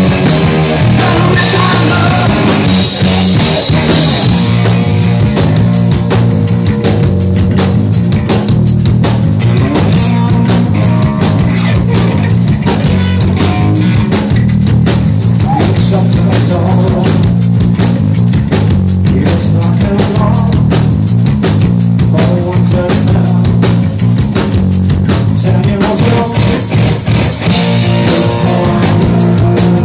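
A live rock band playing loud: distorted electric guitar through a guitar amp over a drum kit keeping a steady beat, with heavy bass.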